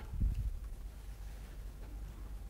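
Quiet room tone in a pause between speech: a steady low hum with faint hiss, and one brief soft low sound about a quarter second in.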